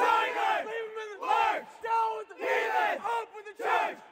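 A team huddle chanting: a group of men's voices shouting short rhythmic calls in unison, about two a second.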